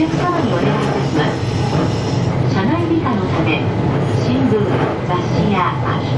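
Keihan 800 series electric train running along street track, heard from inside the car at the front, a steady running rumble with a recorded onboard announcement playing over it.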